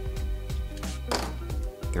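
Background music, with a light click about a second in.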